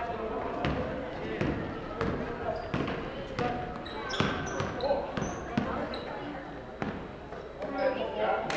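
A basketball being dribbled on a hardwood gym floor, a sharp bounce roughly every half second, with a few short high squeaks of shoes on the court and voices in the background.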